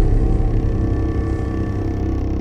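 Low, dense rumble with a steady droning hum, slowly fading: the tail of a cinematic boom sound effect.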